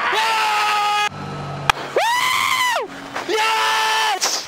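A racing driver screaming in celebration over his team radio: three long, high-pitched yells, each rising at the start and falling away at the end, over the radio's hiss.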